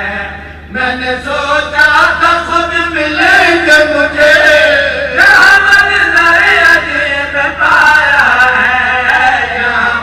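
A man chanting verses through a microphone and loudspeakers in a melodic voice with long, drawn-out notes that slide in pitch. He pauses briefly and starts again about a second in. A steady low hum runs underneath.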